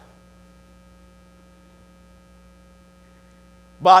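Faint steady electrical hum, several fixed tones held level throughout. A man's voice begins speaking just before the end.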